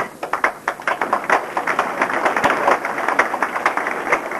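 Crowd applauding, many hands clapping in a dense, irregular stream.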